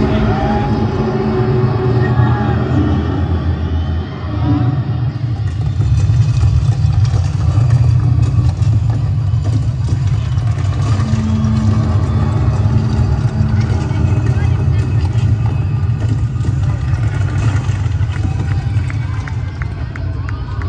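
Loud, distorted arena concert sound recorded from the crowd: a heavy, steady low rumble with crowd voices over it.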